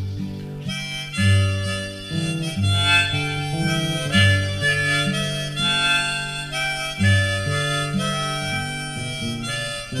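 Folk music on a free-reed instrument: a melody over a bass line whose notes repeat about every second and a half.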